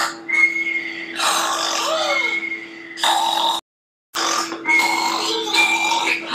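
Cartoon snoring sound effects: several long, noisy snores, one ending in a whistle that rises and falls, over background music. The sound cuts out for about half a second midway.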